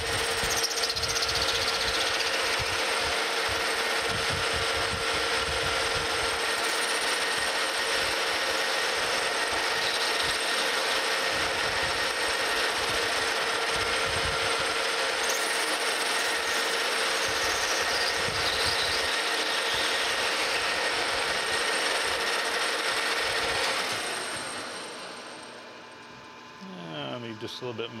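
Metal lathe running, its cutting tool facing off the end of a brass bar: a steady mechanical whine with cutting noise. A little before the end the lathe is switched off and winds down.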